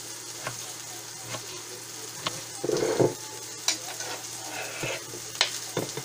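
Chicken-breast cutlets frying in a pan with a steady sizzle, under a few sharp, uneven taps of a knife cutting sauerkraut on a cutting board. A louder bump comes about halfway through.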